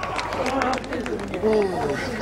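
Several people talking over one another in an outdoor crowd, with scattered short clicks and knocks.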